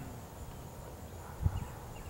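Quiet outdoor background noise with a low rumble, and one soft low thump about one and a half seconds in.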